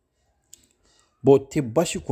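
Silence with a faint click about half a second in, then a voice speaking from a little over a second in.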